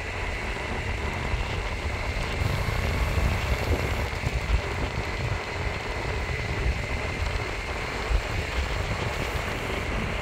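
Electric skateboard rolling along an asphalt path at speed: a continuous low, gusting rumble of wind buffeting the microphone and tyre noise, with a faint steady high whine.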